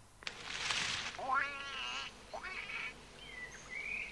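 A bird's wings flapping, then a couple of short quacking duck calls, followed by thin, high chirping whistles of small birds.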